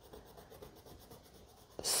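A Prismacolor Premier coloured pencil scribbling back and forth on sketchbook paper, laying down a colour swatch: faint, soft scratching of pencil lead on paper.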